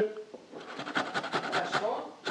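Ginger root being grated on a metal box grater: a quick series of short scraping strokes, several a second.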